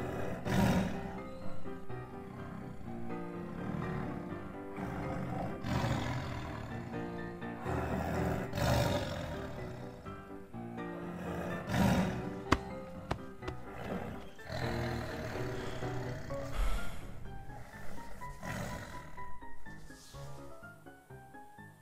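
Background music with lion roars laid over it, repeated every few seconds. A rising run of notes comes near the end.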